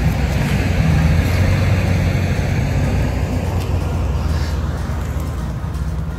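A vehicle engine running with a steady low hum, easing off a little near the end.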